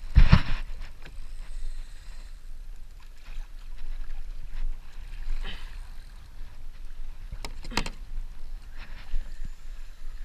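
Sea water splashing and slapping against a kayak hull, over a steady low rumble of wind on the microphone. The loudest splashing comes right at the start and again about three-quarters of the way through.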